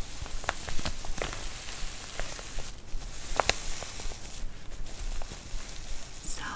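Long acrylic nails scratching and rubbing over a soft, fleece-like fabric pouch, making a steady rustling hiss broken by scattered sharp clicks.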